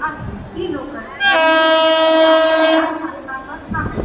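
Train horn sounding one steady, loud blast of about a second and a half, starting about a second in, as a train passes at speed.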